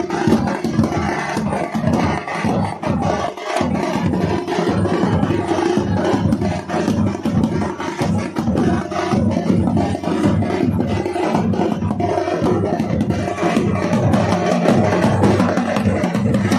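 Loud, fast street drumming with a dense, driving beat, many strokes a second.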